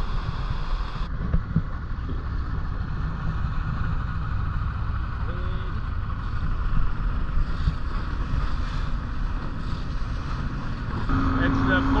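Wind rushing over the microphone and the low, steady drone of a rigid-inflatable dive boat's twin outboard motors running at speed over the sea, growing louder near the end.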